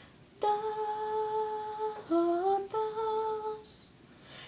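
A young woman's unaccompanied voice singing a wordless melody: a long held note, then a short phrase stepping upward into another held note.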